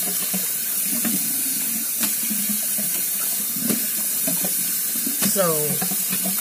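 Water running steadily from a bathroom sink tap, an even hiss with a few faint clicks.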